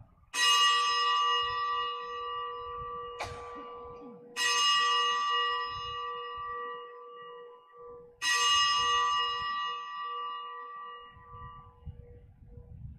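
Altar bells rung three times, about four seconds apart, each ring a cluster of bright tones that fades slowly. They mark the elevation of the chalice after the consecration.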